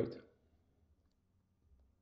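The tail of a man's spoken word, then near silence, with one faint click near the end.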